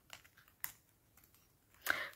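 Mostly quiet, with one faint click a little over half a second in and a brief louder rustle just before the end, from fingers handling a small metal earring.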